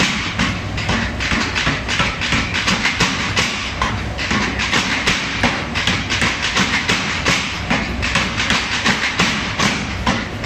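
Power hammer pounding a red-hot steel broad axe blank held in tongs on its die, with rapid steady blows, about four a second, over the machine's low running hum.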